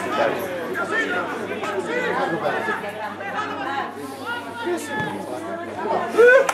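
Several spectators' voices overlapping in indistinct chatter close to the microphone, with no single voice standing out.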